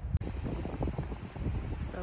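Wind buffeting the phone's microphone, a gusty low rumble, with one sharp click just after the start.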